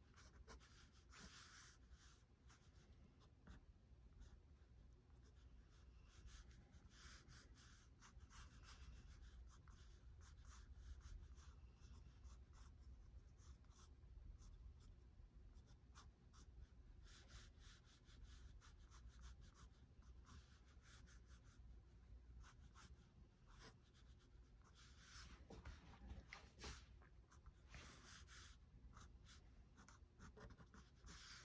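Faint scratching of a fine-tip ink pen drawing quick strokes on paper, coming in short runs of strokes with pauses between them.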